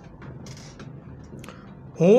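Faint background noise with a few soft clicks or creaks.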